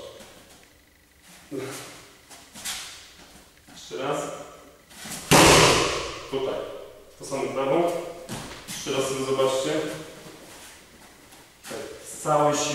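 A roundhouse kick landing on a handheld kick shield: one loud, sharp impact about five seconds in.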